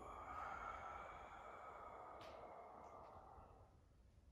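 A long, breathy sigh out through the mouth: a deliberate yoga exhale to let go of tension. It starts strongly and fades away over about three and a half seconds.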